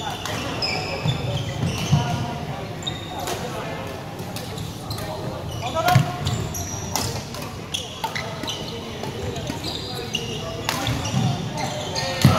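Badminton play in a large sports hall: sharp racket strikes on the shuttlecock, the loudest about six seconds in, and many short high squeaks of court shoes on the wooden floor. A hum of voices runs underneath.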